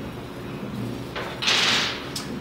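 A brief sliding scrape, about half a second long, about one and a half seconds in, as hardware on the projector rail rig is handled. A low steady hum runs underneath.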